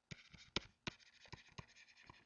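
Pen stylus writing by hand on a tablet: faint, irregular taps and scratches as the words are written, with two sharper taps about half a second and a second in.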